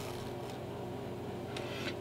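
Quiet, steady room noise with a faint low hum; no distinct handling sound stands out.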